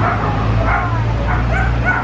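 A small dog yipping and whimpering in short, high-pitched cries over a steady low rumble.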